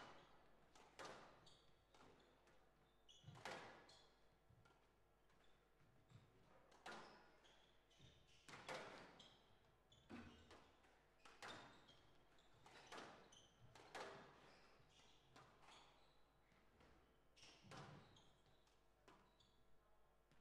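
Faint squash rally: the ball is struck by rackets and hits the court walls in sharp, irregular knocks every second or two.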